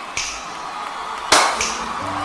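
Sharp percussive hits over a steady crowd din: a short hit just after the start, a loud one about a second and a third in, and a lighter one just after it.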